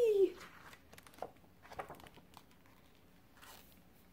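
A high, squeaky-toy squeal, imitating a squeaky rubber chicken, ends just after the start. Then come soft paper rustles and a few light clicks as a picture book's page is turned.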